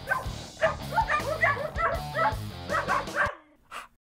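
A dog barking about ten times in quick, yappy succession over a music sting with a steady bass line; both stop abruptly about three and a half seconds in.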